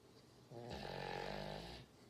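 A sleeping dog snoring: one long snore of a little over a second, starting about half a second in.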